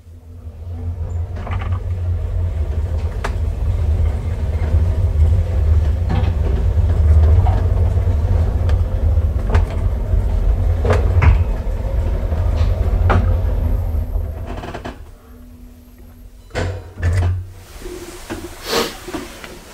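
Traction elevator car travelling in its shaft: a steady low rumble with scattered clicks and knocks, dying away about fourteen seconds in as the car slows and stops. A few louder knocks come near the end.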